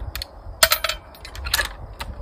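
Bolt of a Thompson Center Compass .308 bolt-action rifle being worked by hand: a handful of sharp metallic clicks and clacks, about five in two seconds.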